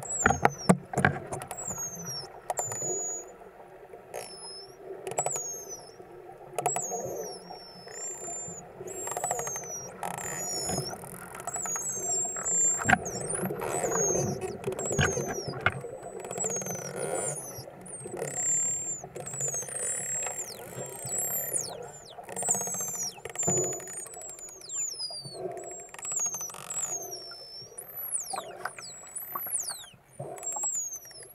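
Underwater recording of a pod of toothed whales whistling: many high whistles that sweep down and up in pitch, roughly one a second, with scattered clicks over a steady underwater rush.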